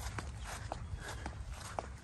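Footsteps on a mown grass path, about two steps a second, over a steady low rumble.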